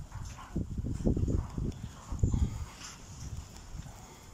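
A flock of Harri lambs moving about a dirt pen: irregular low thumps and shuffling of many hooves.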